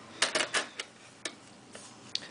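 Several light clicks and taps in the first second, with one more a little later, as fingers handle the aluminium bottom case of a unibody MacBook.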